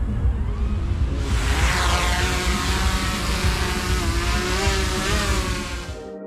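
DJI Mavic 3 quadcopter's motors and propellers spinning up about a second in as it lifts off: a high whirring hiss with a whine that rises, then wavers in pitch, over a steady low rumble.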